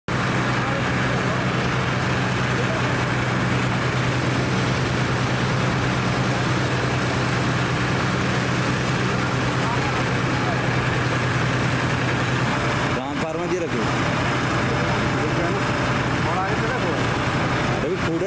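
Steady rushing noise of a large fire burning, with a vehicle engine idling underneath that drops out about twelve seconds in. Indistinct voices shout in the background, louder near the end.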